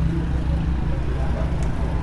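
Steady low rumble of street traffic in the background.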